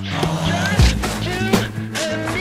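Hip hop music with a heavy kick-drum beat and a voice over a steady bass line.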